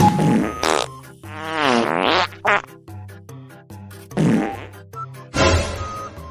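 A string of farts: one long, wavering one and then several short ones, over background music.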